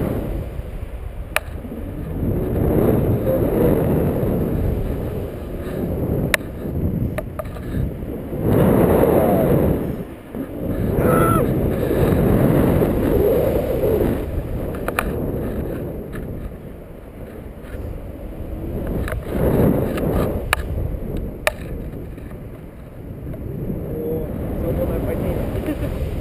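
Wind buffeting the microphone of a handheld action camera during a paraglider flight: a loud low rushing that swells and fades in gusts every few seconds, with a few sharp clicks.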